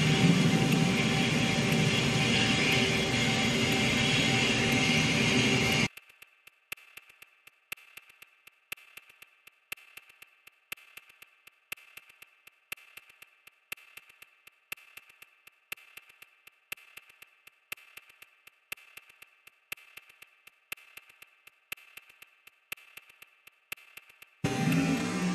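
A loud rushing noise that cuts off suddenly about six seconds in, followed by a steady ticking beat over a faint held tone in background music.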